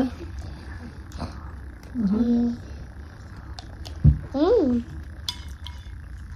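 Metal spoons clinking and scraping on ceramic cake plates, with a few light clicks and a low thump about four seconds in. Two short hummed voice sounds come in between, the second rising and falling in pitch.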